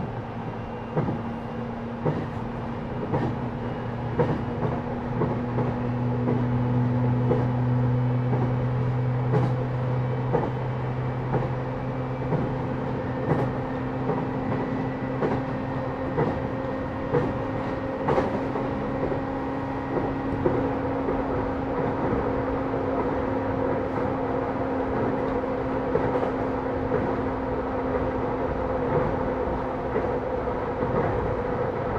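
Interior running sound of a JR East E131 series 600 electric multiple unit, heard from its motor car MoHa E131-614 while under way between stations. The traction motors give a steady hum with a higher tone above it, and short clicks come from the wheels on the track. The lowest hum fades away about twelve seconds in while the higher tone carries on.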